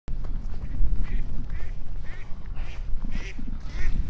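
Wind buffeting the microphone, with faint waterfowl calling repeatedly across the water, about two calls a second.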